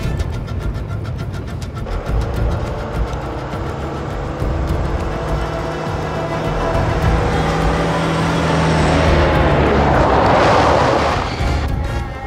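Dramatic film score over a truck coming on with its engine running. A swelling rush of noise builds over the last few seconds and cuts off abruptly as the truck stops: its brakes had given out and it was halted on the handbrake.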